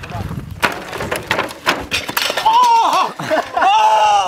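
A unicycle rolling across wooden pallets with a rapid run of knocks and clatters, then a long, wavering yell as the rider crashes onto a wooden sawhorse.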